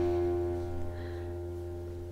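A single held musical note or chord from an instrument, ringing steadily and fading slowly, over a steady low hum.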